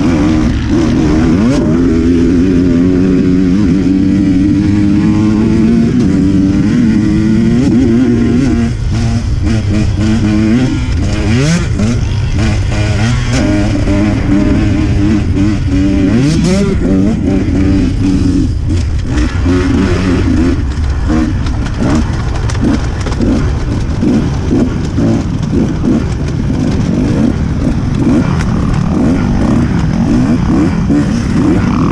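Off-road dirt bike engine under way on a race trail, the revs rising and falling again and again with throttle and gear changes. The note turns choppier over the last few seconds as the bike picks its way through the woods.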